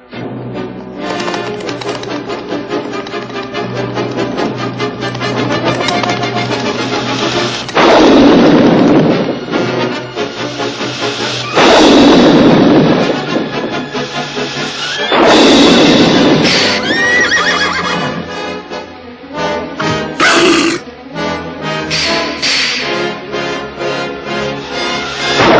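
Dramatic orchestral film score with a horse whinnying. Three loud rushing blasts break in about eight, twelve and fifteen seconds in, as the dragon breathes fire.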